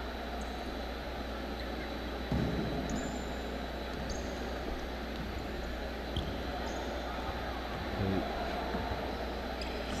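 Indoor basketball gym ambience: a steady hall noise with scattered faint crowd and player voices, and a few brief high squeaks of sneakers on the hardwood court.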